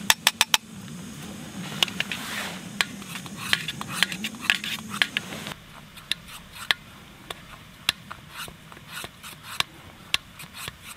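A long metal spoon stirring coffee grounds into boiling water in a Jetboil Flash cup, scraping and clinking irregularly against the side. There are a few quick taps right at the start as the grounds are knocked in. A steady low rush from the stove and the boil falls away about halfway through as the flame is turned down low.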